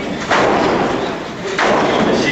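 Two heavy thuds about a second and a quarter apart, each trailing off in echo: blows landing between two wrestlers brawling in the ring.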